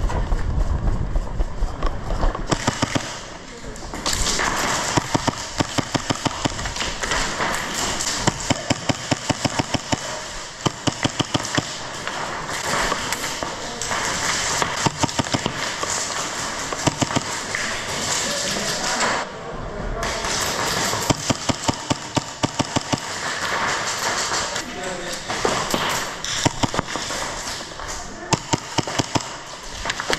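Airsoft gunfire in a large indoor hall: rapid runs of sharp snaps from BB guns firing, with BBs striking wooden and fabric barricades, over a steady hiss.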